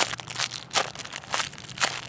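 Clear plastic packaging bag crinkling in quick, irregular rustles as the soft foam squishy inside it is squeezed by hand.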